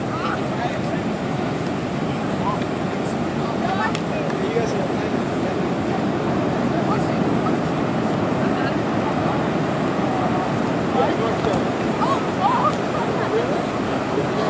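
Steady wash of ocean surf and wind on the beach, with scattered voices of people calling out and chattering over it.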